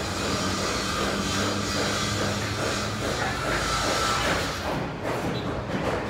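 An engine idling steadily with a low hum, over general outdoor noise.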